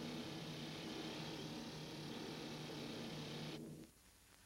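Steady low engine drone with a hiss over it, cutting off shortly before the end.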